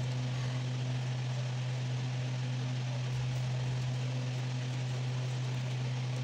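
Steady low hum with an even hiss behind it, unchanging throughout, with no distinct events.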